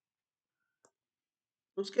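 Near silence with one faint, short mouse click a little under a second in, then a man's voice starts near the end.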